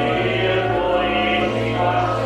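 Pipe organ playing loud, sustained full chords, changing chord about one and a half seconds in.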